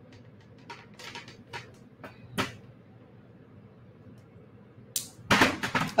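Faint, scattered ticks and scratches of thin beading wire being pulled and handled against a metal end cap and beads, with a louder rustling burst near the end.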